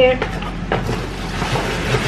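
Rustling and scraping of a cardboard box and plastic packaging as a plastic food-storage container is pulled out of it, with a couple of light knocks.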